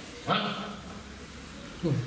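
A man's voice through a microphone in short bursts: one loud exclamation about a third of a second in that trails off, and a brief falling syllable near the end.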